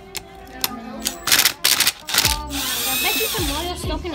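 Power drill motor run in two short bursts, then held for about a second and a half, its whine wavering in pitch.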